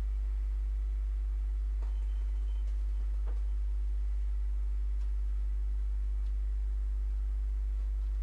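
A steady low hum with fainter steady tones above it, and two faint clicks about two and three seconds in.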